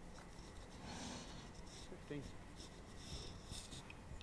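Quiet snooker arena room tone with faint murmured voices.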